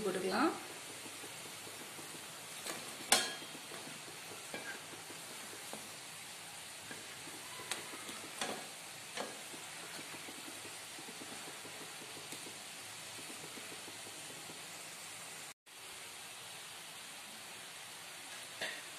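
Bonda batter dumplings sizzling steadily as they deep-fry in hot oil in a wok. A few sharp clinks of a metal skimmer against the pan stand out, the loudest about three seconds in. The sound cuts out briefly near the end.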